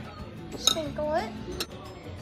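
Two light clinks of kitchenware, about two-thirds of a second in and again past a second and a half, with a gliding melodic voice-like tune between them.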